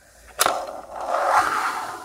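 Handling noise as a plastic model railway coach is turned over in the hands close to the microphone: a sharp click about half a second in, then a steady rubbing scrape.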